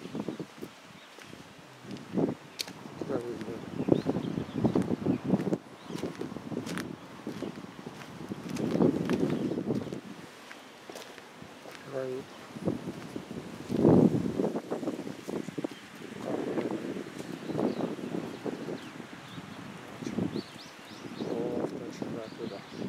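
A man's voice speaking in short stretches with pauses between them, over faint outdoor background noise.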